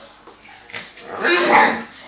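A dog vocalising once, loudly, for just under a second about a second in, as an Akita and a miniature schnauzer start to scuffle.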